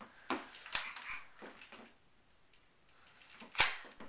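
A few light knocks and clicks. The sound drops to dead silence for about a second, then comes one louder knock near the end.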